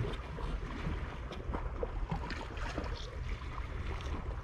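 Small sea waves lapping and splashing against rocks, with scattered little splashes, over a low rumble of wind on the microphone. There is one thump right at the start.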